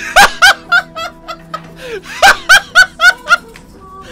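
A man laughing hard in two high-pitched runs of quick pulses, about four a second, over faint background music.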